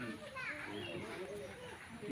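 Faint voices talking in the background, a low conversation with no clear nearby speaker.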